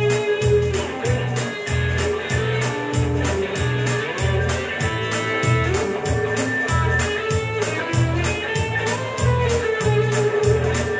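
A live rock band playing an instrumental passage: electric guitar over bass and drums, with a steady high beat about four strokes a second.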